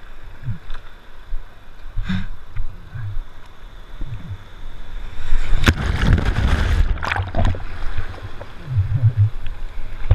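Whitewater surf sloshing and churning around a waterproof camera held in the water. About five seconds in, a loud rushing wash lasts roughly two seconds as the camera goes under the water.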